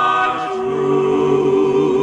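Male gospel vocal group singing unaccompanied in close harmony, holding long chords. About half a second in they move to a new, lower chord and sustain it.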